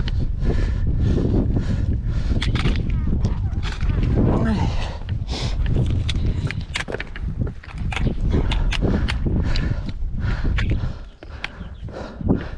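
Wind buffeting the microphone in a steady low rumble, broken by many sharp clicks and knocks of aluminium trekking-pole tips and boots striking rock during a scramble over boulders.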